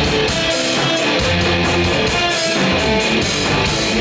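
Live rock band playing loud and steady: electric guitar over bass and drums, with cymbal hits keeping an even beat.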